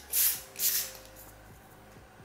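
Aerosol lace-hold spray can hissing in two short bursts, each under half a second, in the first second, sprayed under a wig's lace at the hairline.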